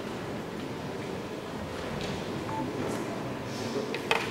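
Steady background noise of a sports hall, with a short beep about halfway through and a sharp click near the end.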